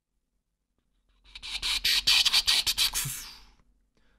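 A short burst of crackling, hissing noise broken by rapid clicks, starting about a second in and fading out about two seconds later.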